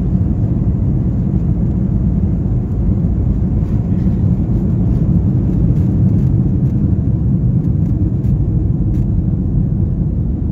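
Cabin noise of an Airbus A320 on its takeoff roll and lift-off: a loud, steady low rumble from the engines at takeoff power and the wheels on the runway, with faint small clicks and rattles over it.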